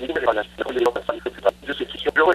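Speech only: a voice talking over a telephone line, thin and cut off at the top.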